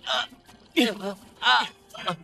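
Men grunting and crying out with effort and pain in a scuffle: a short breathy burst at the start, then short pitched cries, one sliding down in pitch about a second in.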